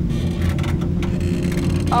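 An engine running steadily with a low, even drone as the suspended beach buggy rides along the cable.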